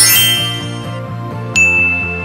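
A twinkling, glittery chime sound effect at the start, then a single high ding about a second and a half in, over background music with a steady beat.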